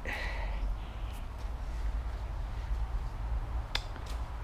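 Handling noise from a folding e-bike being folded by hand: a short scrape or rustle at the start and a single sharp click near the end, over a steady low rumble.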